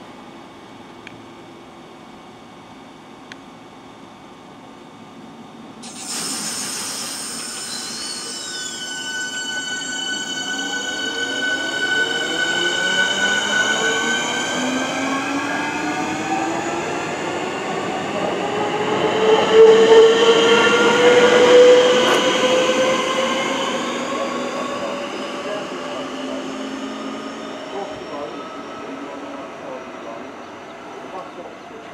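Electric multiple-unit train whining as it moves through a station. From about six seconds in, a chord of motor whines glides upward in pitch as the train gathers speed. It is loudest around twenty seconds in and then slowly fades.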